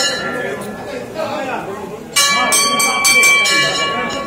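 A temple bell rung repeatedly, each strike ringing on. Several quick strikes come in the second half, over the murmur of people's voices.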